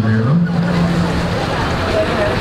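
A man's voice singing or chanting through a loudspeaker, stepping between notes and then holding one note for about a second, over the general noise of a crowd.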